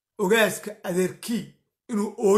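Only speech: a man talking in three short phrases with brief gaps, another starting near the end.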